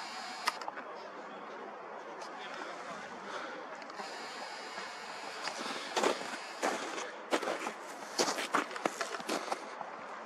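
Steady outdoor background hiss, then from about halfway through a run of irregular clicks and knocks from handling a handheld camera as it is swung round.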